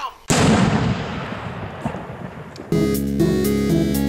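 A single loud bang about a third of a second in, trailing off in a long fading rumble, then music with held, chord-like notes starts a little past halfway.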